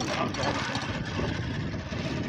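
Motorcycle engine running with the bike under way, a steady rushing noise over it.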